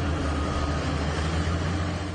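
Diesel engine of a BOMAG single-drum road roller running steadily as the roller drives across the site: a deep, even drone.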